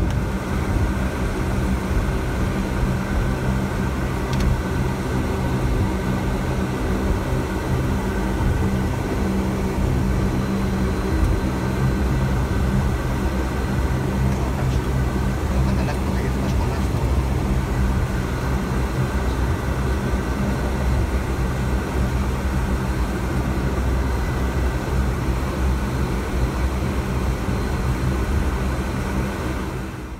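Cockpit sound of a Bombardier Dash-8 Q400: its Pratt & Whitney PW150A turboprop engines and propellers running steadily at low power on the ground. It is an even drone with several fixed low hum tones over a rumble.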